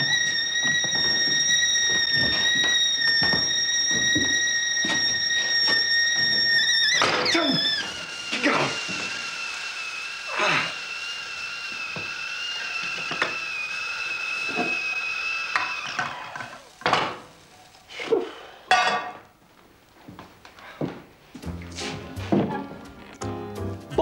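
Metal stovetop kettle whistling at the boil: a loud, steady whistle that about seven seconds in drops to a lower, wavering note as the kettle is handled, then cuts off about sixteen seconds in. A few scattered knocks and thumps follow.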